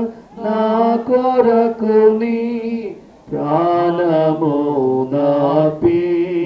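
A devotional hymn sung in long held notes, with two short breaks between phrases, about a third of a second and three seconds in.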